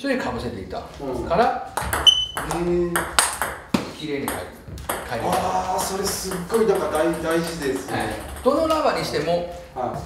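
Plastic table tennis balls clicking off paddles and the table in a quick run of sharp, ringing hits a couple of seconds in, with men's voices over the play.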